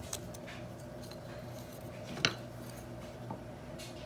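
A wooden ruler and a craft knife handled on a plastic cutting mat: a few light taps and one sharper click about two seconds in, over a steady low hum.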